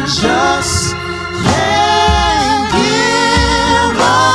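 Gospel singing: voices holding long notes and sliding between them over an accompaniment, with deep bass notes about two seconds in and again near three and a half seconds.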